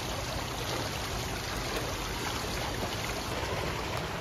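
Steady rushing and lapping water noise of an indoor swimming pool, even throughout with no distinct splashes.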